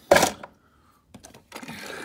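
Handling noise close to the microphone from a diecast model truck and its clear plastic display case being moved by hand: a short loud burst at the start, then rustling and light clatter from about one and a half seconds in.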